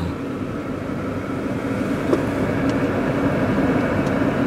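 Car running, heard from inside the cabin: a steady engine hum with road noise, growing slightly louder.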